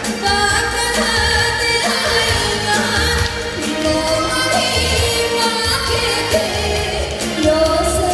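A woman singing a Japanese song live into a handheld microphone over backing music with a recurring bass beat.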